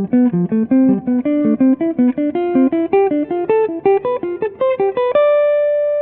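Archtop jazz guitar playing diatonic triad arpeggios up the C major scale in triplets, about six single picked notes a second rising in pitch. The run ends on one held note that rings on near the end.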